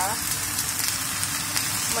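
Kailan (Chinese broccoli) stir-frying in a little oil in a nonstick pan over high heat: a steady sizzle with fine crackles.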